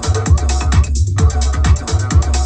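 Techno house DJ mix playing with a steady beat and heavy bass. About a second in, everything above the bass cuts out for a moment, then comes back.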